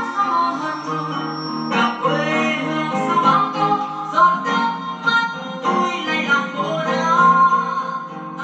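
A song with acoustic guitar and a singing voice, played from a phone through the external audio input of a Sharp GX-55 combo stereo and heard from its speakers.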